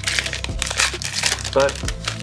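Foil wrapper of a trading-card pack crinkling as it is torn open and peeled back by hand, a dense crackle that lasts about a second and a half.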